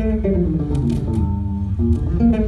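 Live band playing an instrumental passage without singing: an electric bass guitar plays a moving line over guitar and drums, with a few cymbal hits about a second in.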